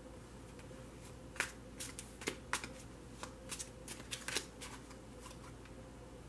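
Tarot cards being handled: a run of light, sharp card clicks and snaps starting about a second and a half in, thinning out after about four and a half seconds, with a couple more near the end.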